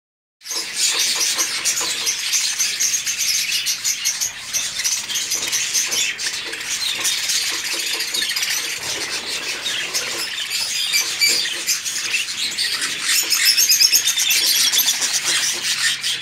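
A flock of budgerigars chattering continuously: a dense, overlapping mix of warbles, chirps and short squeaky calls.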